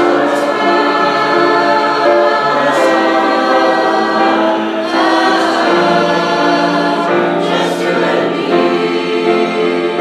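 Mixed choir singing sustained chords, with the singers' 's' consonants hissing together a few times.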